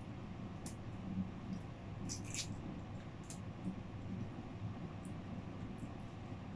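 A raw peanut shell being cracked and pulled apart by hand: a few faint scattered snaps and crackles over a low steady hum.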